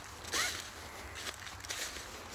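Footsteps crunching and rustling through dry fallen leaves, in irregular steps, the loudest about half a second in.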